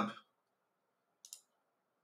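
Two quick computer mouse clicks, close together, about a second in.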